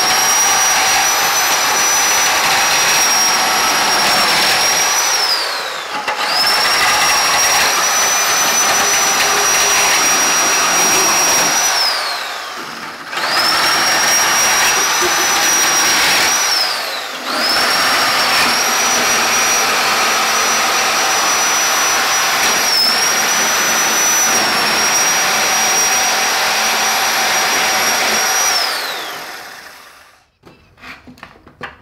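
Handheld reciprocating saw running in four long bursts while it cuts through a wooden shelf and its dowel rods. Each burst revs up quickly, holds a steady high whine, then winds down with falling pitch. The last burst is the longest, about eleven seconds.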